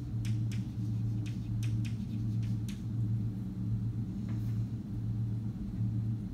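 Chalk tapping and scratching on a blackboard as words are written: a quick string of sharp clicks in the first three seconds, then one fainter stroke. Underneath runs a steady low room hum, the loudest thing throughout.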